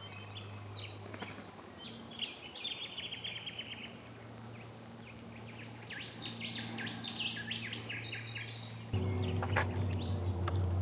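Wild birds calling in bushland: a fast run of trilled notes about two seconds in, then a series of sharp chirps from about six seconds, over a steady low hum. Near the end the background turns louder.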